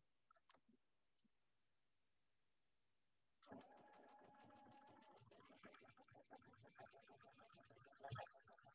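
Sewing machine starting about three and a half seconds in and stitching a seam at a steady speed: a quiet, rapid, even ticking of the needle over a steady motor whine. A few faint clicks come before it starts.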